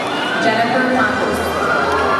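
Crowd cheering and calling out: many voices at once, with high whoops and squeals over the chatter.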